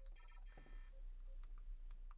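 Faint electronic beeps from a SpeedyBee LiPo battery discharger: a quick run of high chirping beeps in the first second, a couple of short lower beeps, then a few light button clicks near the end.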